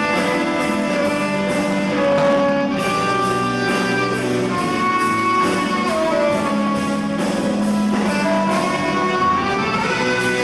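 Live band playing: a saxophone melody over electric guitars and drums keeping a steady beat.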